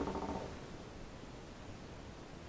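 Faint steady hiss of a quiet small room's tone, after a pulsing buzz fades out in the first half second.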